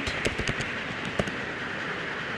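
Computer keyboard keystrokes: a handful of quick clicks in the first second or so, then steady background hiss.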